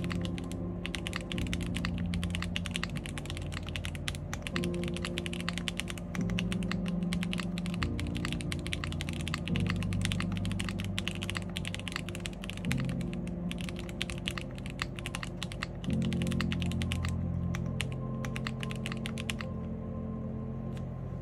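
Fast, continuous typing on an IRON165 R2 custom mechanical keyboard: stock WS Red linear switches in a gasket-mounted polycarbonate plate, under GMK keycaps. The keystrokes thin out and stop near the end, over soft background music.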